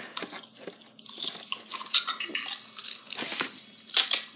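A VHS cassette and its plastic case being handled and put back: a string of small clicks and rustles, with a brief louder scrape a little over three seconds in.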